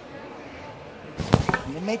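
Faint murmur of a large hall, then a little over a second in, a quick cluster of sharp, loud knocks close to the microphone, likely the microphone being handled or tapped. A voice begins speaking just after.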